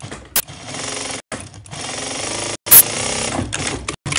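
Industrial sewing machine stitching fabric, running in three short stretches with brief stops between. A sharp click comes at the start and a louder one about two and a half seconds in.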